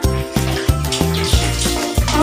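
Background music with a steady, evenly repeating bass beat, and over it water splashing as it is poured from plastic dippers over a cat being bathed, strongest in the second half.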